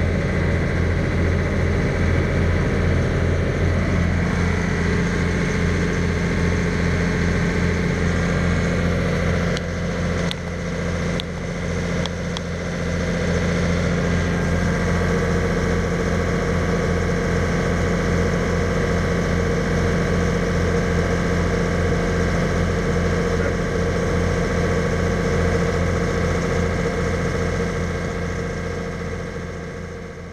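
Passenger ferry's diesel engine running steadily, heard from inside the passenger cabin, with a few faint clicks about ten seconds in. The sound fades out near the end.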